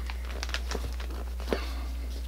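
Steady low hum with a few faint light taps and rustles, the clearest about one and a half seconds in: disposable-gloved hands pressing and smoothing a leather boot down onto its freshly glued rubber sole.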